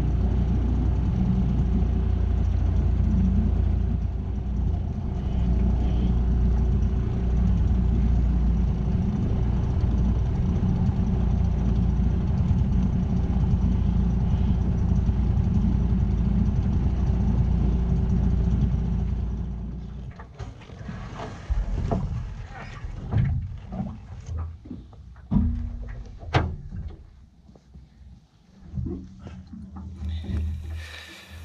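Small Parsun tiller-steer outboard motor running steadily as it pushes an aluminium tinnie, shut off about two-thirds of the way through. Then come irregular knocks and rustling as the boat touches the bank and someone climbs out onto the grass.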